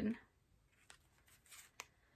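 Tarot cards being handled: a few faint, sharp clicks and a soft brief rustle as cards are picked up and turned over, the clicks about a second in and again near the end.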